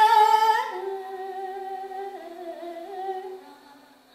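A woman's voice singing a slow, wordless melody in long held notes that step up and down in pitch, loud at first and fading away over the last seconds.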